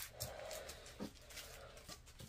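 A dog breathing and snuffling faintly close to the microphone, with a couple of soft clicks from small plastic zip bags being moved on a table.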